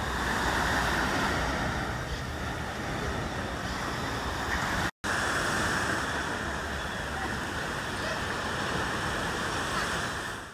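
Steady rushing of sea surf and wind. The sound cuts out for an instant about five seconds in.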